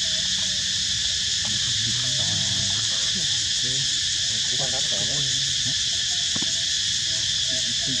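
A loud, steady, high-pitched insect chorus drones without a break, with faint voices underneath.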